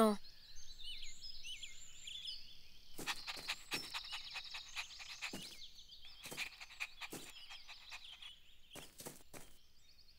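Faint outdoor ambience of small birds chirping and twittering, high-pitched and continuous, with scattered light clicks and taps in the second half.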